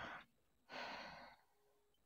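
A woman's faint breath out, a short soft sigh about a second in, after a briefer breath at the start.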